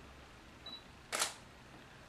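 A camera shutter firing once, a short sharp click about a second in, preceded by a faint short high beep.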